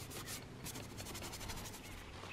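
Faint, quick rubbing strokes, several a second, on an oil-painting panel as a thin layer of burnt sienna is scrubbed on to tone it.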